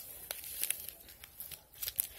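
Paper sweetener packets and a wrapper crinkling as they are handled, a run of short crackles.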